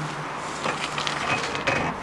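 Footsteps crunching on parking-lot asphalt as someone walks, with irregular short crunches in the second half over a faint steady low hum.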